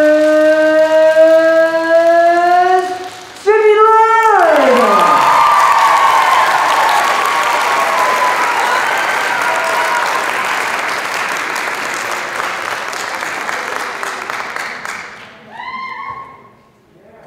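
A single long held tone slowly rising in pitch for about three seconds, then a brief swoop downward in pitch. Then audience applause and cheering for about ten seconds, fading gradually, as a winner is announced.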